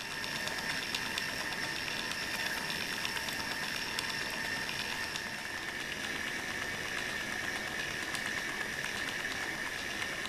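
Motor-driven hinge exerciser running: a small electric gear motor works a linkage that swings a tight brass hinge back and forth to loosen it. It makes a steady mechanical noise with a thin high whine and faint ticks.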